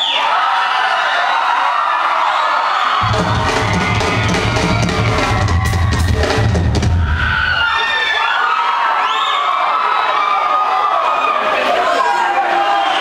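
Live rock band heard from the crowd, loud, with fans cheering and screaming throughout. Heavy drums and bass come in about three seconds in, with cymbal crashes a few seconds later, and drop out before eight seconds in.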